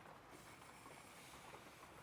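Near silence, with the faint scratch of a mechanical pencil drawing lines on paper.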